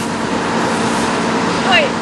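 Claas Lexion combine harvesters working a field: a steady mechanical drone with a constant hum under it.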